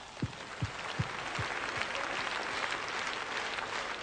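Large audience applauding, the clapping building after the first second and then holding steady. Five low thuds come about every 0.4 seconds in the first two seconds.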